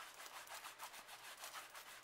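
A cloth rubbed quickly back and forth over bare skin, wiping eyeshadow swatches off a forearm; faint, fast repeated strokes.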